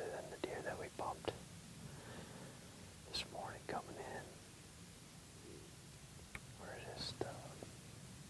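A man whispering in short, broken phrases with pauses between them.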